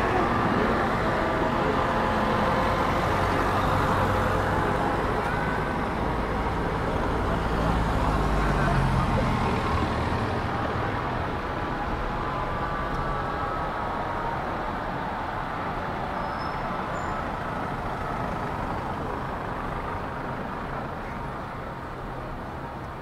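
Street ambience on a town square, with the engine of a passing motor vehicle swelling in the middle and then fading, over a steady background of traffic and voices.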